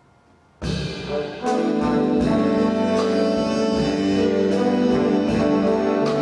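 Jazz big band of brass, saxophones and rhythm section coming in together on the conductor's cue about half a second in, after near silence. It grows louder about a second later into slow, sustained brass chords.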